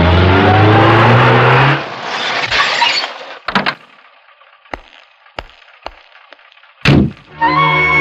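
Hindustan Ambassador car driving up the driveway, its engine rising in pitch, then a few clicks and a loud car door slam about seven seconds in. Background film music comes in right after the slam.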